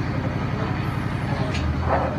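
A steady low engine rumble with a fast, even pulse.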